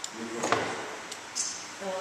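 A sharp click from hand tools working small stone mosaic pieces, about half a second in, with a fainter click after it, amid speech.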